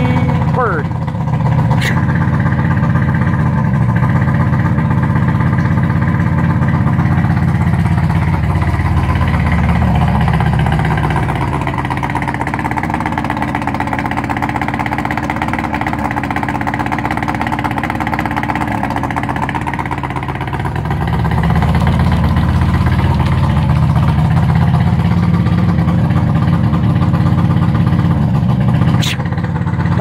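Evinrude two-stroke outboard motor running out of the water on a garden-hose flush during winterizing. It runs at a higher speed at first, drops back to a slower idle for about ten seconds in the middle, then speeds up again.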